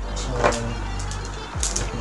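Background music with a steady low beat. Near the end come a few light clicks and rattles as a bundle of small LED bulbs and their wires is picked up from the bench.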